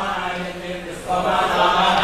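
Voices chanting a devotional mantra over a steady low drone, the chant swelling louder just after a second in.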